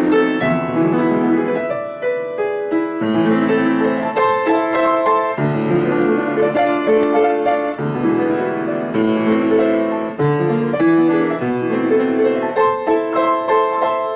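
Grand piano played by a child with both hands: fast, busy passages of full chords and quick notes that change every fraction of a second.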